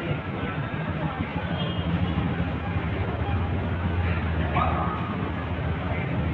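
Transit station walkway ambience: a steady low hum under a constant wash of indistinct background noise and voices, with a short rising tone a little before the end.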